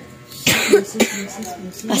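A child's short, breathy outburst about half a second in, muffled by a hand held over the mouth, followed by brief low voice sounds.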